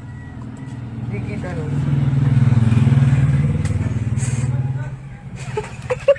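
A motor vehicle's engine passing close by, building up over the first couple of seconds, loudest in the middle, then fading away by about five seconds in.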